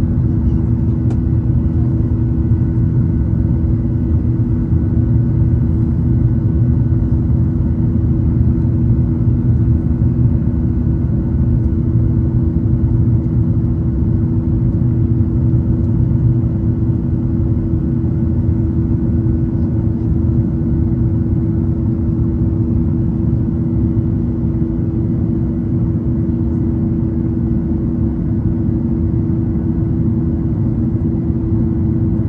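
Airliner cabin noise heard from a window seat during the climb: a steady, loud drone of engines and airflow with a low rumble and a couple of constant humming tones.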